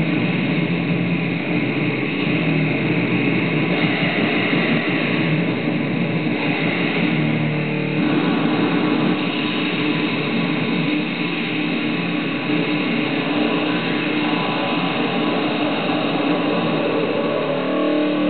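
Loud, heavily distorted live rock music led by electric guitar, a dense and steady wall of sound with held low chords that change about halfway through and again near the end.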